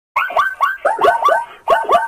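Zebras barking: a rapid series of short yelping calls, each falling in pitch, about five a second, with a brief gap a little after halfway.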